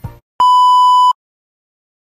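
A single loud electronic beep held at one steady pitch for under a second, starting just after the background music trails off and cutting off suddenly.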